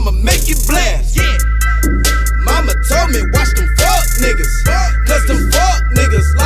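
Hip hop track with a man rapping over deep, booming bass notes and quick hi-hat ticks; a high, steady chord of tones comes in about a second in and holds.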